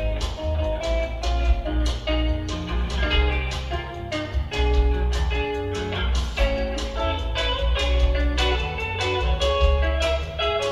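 Solo gold-top archtop electric guitar played through an amplifier, a run of picked single notes and chords over low bass notes, with no voice.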